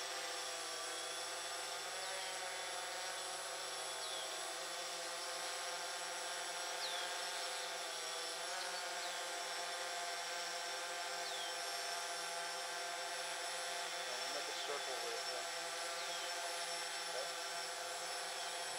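Quadcopter drone propellers humming in a hover: a steady, layered whine that dips slightly in pitch now and then as the motors adjust. Short downward chirps sound every couple of seconds over it.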